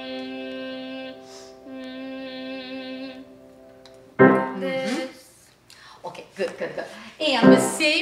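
A voice holding a sung note at about middle C, breaking briefly for a breath about a second in and then holding the same pitch again. It stops about three seconds in, and after that come louder, shorter vocal sounds.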